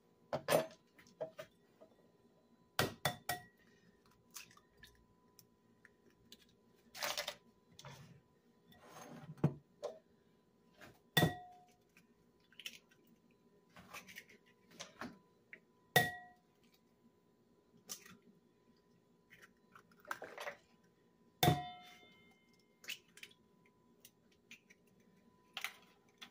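Eggs cracked one at a time on the rim of a glass mixing bowl: sharp taps a few seconds apart, several with a short ringing of the glass, and softer clicks of shell and bowl in between.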